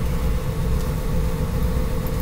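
A steady low rumble with a faint, even hum in it: constant background noise with no change through the pause.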